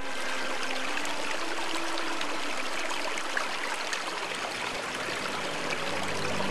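Shallow stream running over stones: a steady rush of flowing water.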